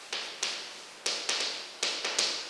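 Chalk writing on a blackboard: about six quick, irregular strokes, each a sharp tap with a short scratch after it, as letters are written.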